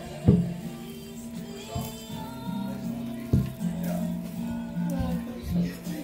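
Christmas music playing in the background, with long held low notes. A brief laugh at the start and two sharp knocks, one just after the start and one about three seconds in.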